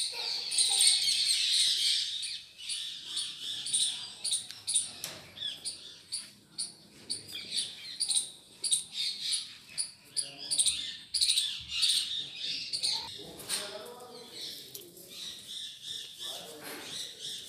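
Many birds chirping at once: a busy chatter of short, high calls, loudest in the first two seconds.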